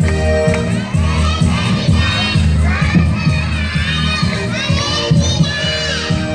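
A group of young children shouting and cheering together, their high voices over music with a steady bass beat.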